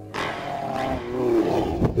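A person growling and roaring close to the microphone in imitation of the Hulk. It starts abruptly and its pitch bends up and down.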